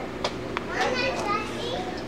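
High-pitched children's voices in the background, after two light clicks in the first half second.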